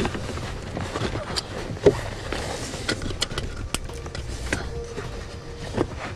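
Plastic connector and braided wiring of a trailer brake controller adapter cable being handled and pushed into a vehicle wiring plug: light rustling with scattered small clicks and knocks, the sharpest about two seconds in.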